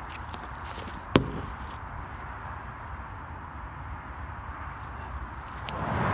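Steady hum of distant road traffic, with a few faint footsteps and one sharp click about a second in.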